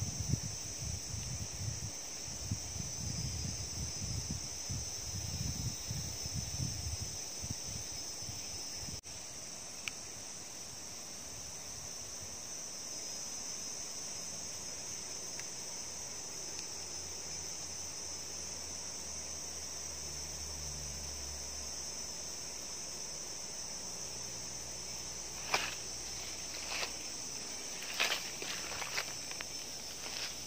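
A steady, high-pitched insect chorus of crickets or cicadas drones without a break. Low rumble of wind on the microphone fills the first several seconds, and near the end come a few sharp clicks, like footsteps on dry twigs and leaves.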